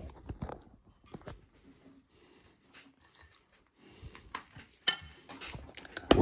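Quiet handling noises as a roast chicken on a plate is worked on a wooden board: scattered small clicks and rustles, with one sharper click about five seconds in.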